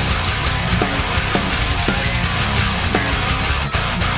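Heavy progressive metal playing continuously: a Yamaha electric bass guitar being fingerpicked along with distorted guitars and drums, the bass moving quickly in the low end, with sharp drum hits throughout.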